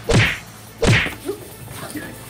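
Two loud whacks, about three-quarters of a second apart, during a staged scuffle on a classroom floor.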